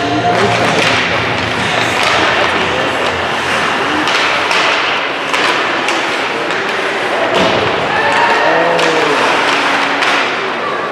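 Live ice hockey in an indoor rink: repeated sharp knocks and thuds of sticks and puck against each other and the boards, over a crowd murmur with shouts from players and spectators.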